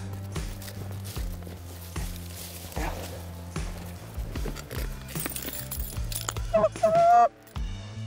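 Background music with a steady low bass line. Near the end, a goose call is blown in a short run of loud honks.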